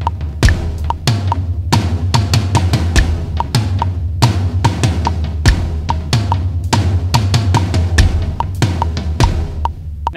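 Electronic drum kit with mesh heads played in a six-count groove, hits on the floor tom and kick drum, over an evenly ticking metronome click, with a low steady hum underneath.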